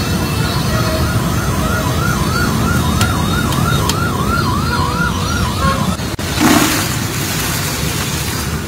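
A siren yelping up and down, about two to three sweeps a second, over steady street rumble; it stops near the end and is followed by a brief loud rush of noise.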